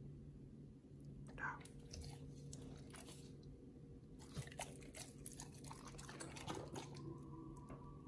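Pit bull chewing pieces of raw beef: faint clusters of short, wet clicks and bites, over a low steady hum. A thin steady tone comes in about seven seconds in.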